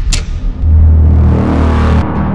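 Logo-sting sound effect: a sharp hit, then a deep swelling rumble with a rising whoosh that peaks and begins to fade.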